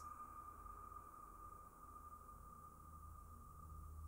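Near silence: a faint steady high tone and a low hum under it.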